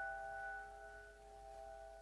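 Piano notes from a slow, quiet passage on the five-note set A-flat, G, E, E-flat, C, left ringing on the sustain pedal and slowly dying away, with no new note struck.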